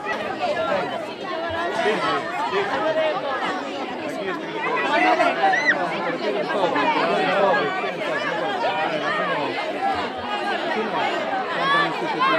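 A crowd chattering: many voices talking over one another at once, none standing out.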